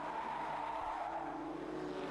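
Banger-racing saloon cars running around the oval, a steady engine sound with tyres squealing, heard faintly.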